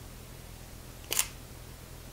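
Sony a6000 mirrorless camera's shutter firing once, a single short click a little past halfway through, at 1/1000 s. The flash mounted on it does not fire.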